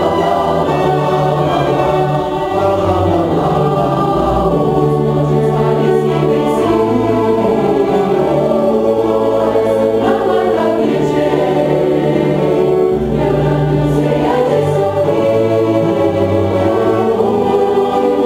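Choir singing with a small string orchestra of violins, viola, cello and double bass; the low strings hold long bass notes under the voices, changing every second or two.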